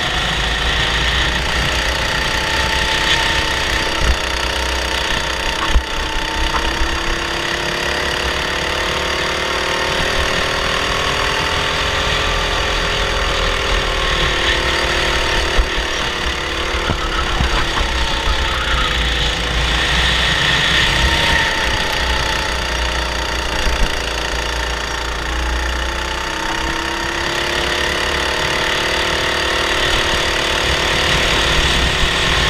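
Honda 270cc single-cylinder four-stroke kart engine running hard on track, its note dipping and climbing again with the corners, heard from on board with a strong low rumble. A few sharp knocks stand out along the way.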